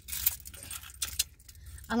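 A bunch of metal keys on a keyring jangling as they are picked up and handled: a cluster of short jingles in the first half-second, then a couple more about a second in.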